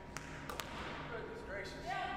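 A basketball bouncing on a hardwood gym floor a few times, faint sharp knocks early on, then a voice begins faintly near the end.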